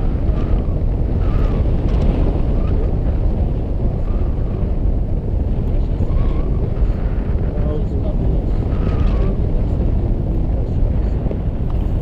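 Wind rushing hard over an action camera's microphone in flight, a steady low rumbling buffet, with faint voices under it.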